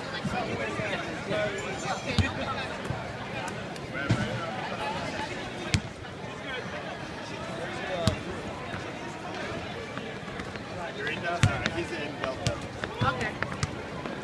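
Basketball bouncing on a hardwood court in separate bounces every couple of seconds, a few coming closer together near the end, over the steady chatter of many people talking.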